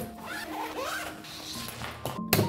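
A zipper being pulled along for about a second, a scratchy sweep heard over background music.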